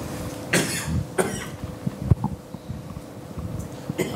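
Someone coughing, two short coughs about half a second and a second in, followed by a single sharp knock about two seconds in.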